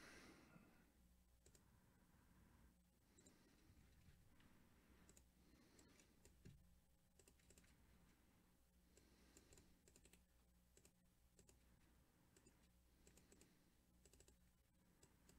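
Near silence with faint, scattered computer mouse clicks, and one slightly louder click about six and a half seconds in.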